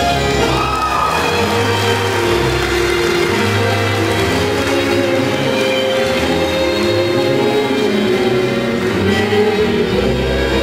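Tango music played by a small orchestra, with bowed violins and bandoneon over a steady low bass line.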